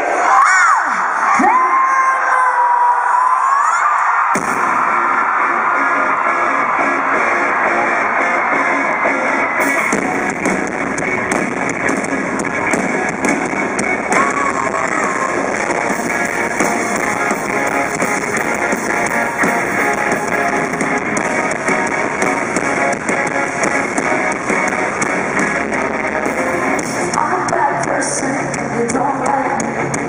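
Live rock band playing in an arena, recorded from within the audience: a wavering high tone sounds alone at first, then drums, bass and guitars come in together about four seconds in and the song continues at full volume.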